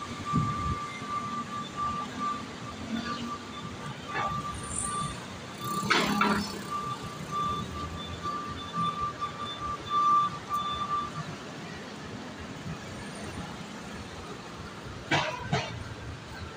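Street traffic noise from the road below, with a repeated high electronic beeping running through the first eleven seconds or so and a short louder burst of noise about six seconds in.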